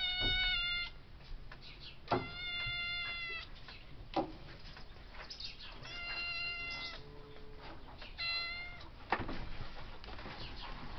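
A grey-and-white domestic cat meowing four times from a high barn beam, each meow long and held at an even pitch for about a second.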